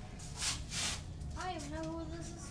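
Two short rips of paper, a greeting-card envelope being torn open, followed by a brief voice.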